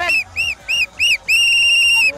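A whistle blown four short times in quick succession, then one long steady blast.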